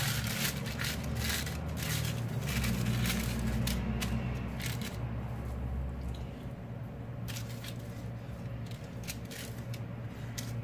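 Baking paper crinkling and rustling in short spells as it is pressed flat into a glass baking dish, with a few light taps, over a steady low hum.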